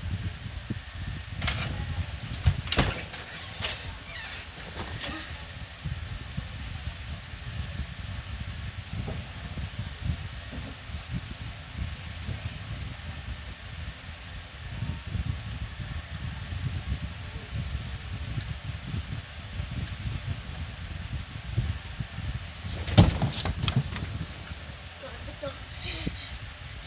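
Footsteps, bumps and knocks of a person stumbling about a small room over a steady low rumble: a few sharp knocks in the first five seconds and a louder cluster of thumps near the end as he reaches the bed the phone lies on.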